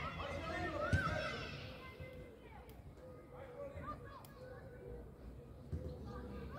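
Young footballers' voices shouting and calling to each other across the pitch, loudest in the first two seconds, with a single thump about a second in and fainter calls after.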